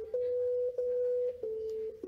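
Steady electronic tones played from a laptop through a small speaker, each set off by touching a foil pad wired to a Makey Makey board. About four notes of roughly half a second each, the middle two a little higher in pitch.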